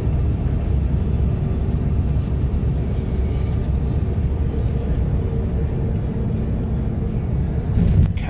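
Airliner cabin noise on the landing roll at touchdown and just after: a loud, steady low rumble of engines and wheels on the runway, felt inside the cabin.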